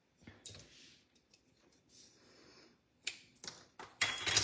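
Near silence with a few faint clicks and light rustling: small craft supplies handled on a work table, one click about half a second in and three close together near the end.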